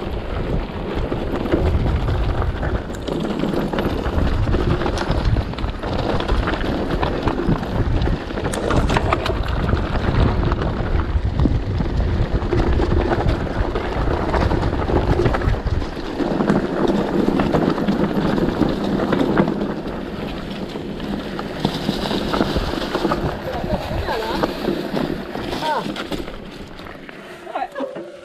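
Mountain bike riding over a gravel and dirt trail: tyres rolling over loose stones, the bike rattling, and wind buffeting the microphone, with a heavy rumble through the first half.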